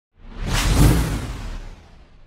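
An intro sound-effect whoosh with a deep rumbling low end: it swells in quickly, peaks just under a second in, then slowly fades away.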